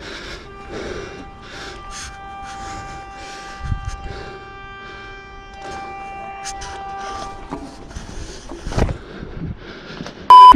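Hands and shoes knocking on the rungs of a steel wall ladder during a climb onto a flat roof, with a heavier thump a little under four seconds in and another near the end. A steady, high-pitched tone is held through most of the climb and stops about two and a half seconds before the end.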